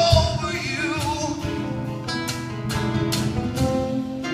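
Live music: a plucked guitar with a singing voice that bends in pitch, most clearly in the first second or so.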